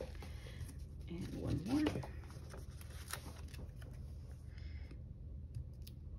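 A brief murmured voice sound about a second and a half in, over light rustling and small clicks of paper stickers and washi tape being handled on a planner page.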